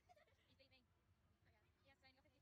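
Near silence, with faint voices now and then.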